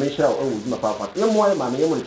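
A man talking, his words running on without a break.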